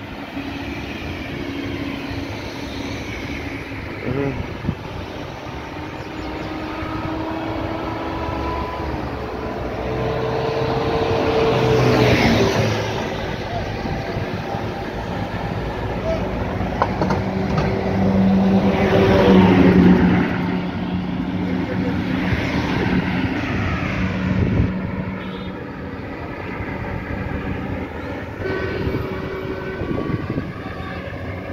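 Road traffic: cars passing one after another close by on a two-lane highway, each swelling and fading with tyre noise and engine hum. The loudest passes come about twelve seconds in and again around twenty seconds.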